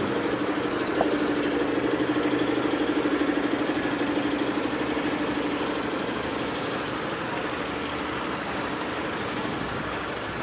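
Road traffic with queued cars idling, a steady engine hum strongest in the first half that then fades.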